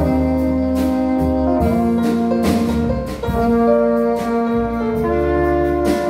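Small jazz ensemble playing an instrumental number, the alto saxophone, trombone and trumpet holding chords together over piano, double bass and drums, with regular cymbal and drum strokes.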